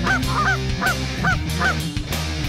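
Canada geese honking in a rapid run of sharp, upward-hooked calls, about three a second.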